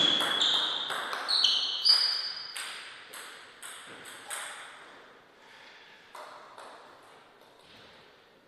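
A celluloid table tennis ball hitting bats, the table and the floor. It makes a string of sharp clicks, each with a short high ping, loudest in the first two seconds and then fading, with a few quieter taps near the end.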